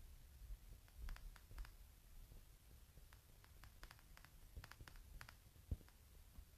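Near silence: faint room tone with scattered faint clicks and a soft thump near the end.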